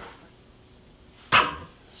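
Quiet room tone, then about a second in a single short, sharp sniff as a person smells the paint.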